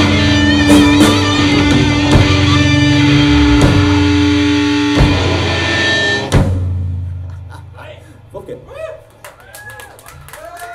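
Thrash metal band playing live, with distorted electric guitars, bass and drum kit, bringing a song to its end with a last hit about six seconds in, after which the band's sound dies away. In the last few seconds, voices from the audience shout and cheer.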